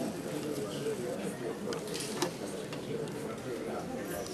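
Steady murmur of many voices chatting in a large indoor hall, with a few sharp clicks or knocks scattered through it, the sharpest a little over two seconds in.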